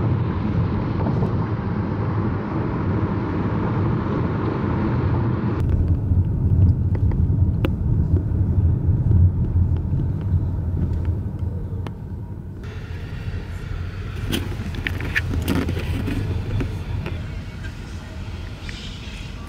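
Road noise inside a moving car: a steady low rumble of tyres and engine. It changes abruptly twice, about six and thirteen seconds in, and a few short clicks come near the end.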